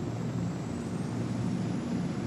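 Steady low engine rumble of a column of armoured vehicles driving past.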